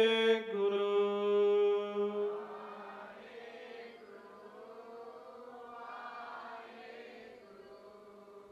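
A man chanting, holding one long note for about the first two seconds, then fading to soft, quieter chanting with a faint steady tone underneath.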